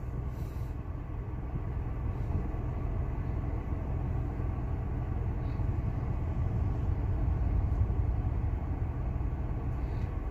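Steady low rumble of a Hyundai Xcent running, heard from inside its cabin.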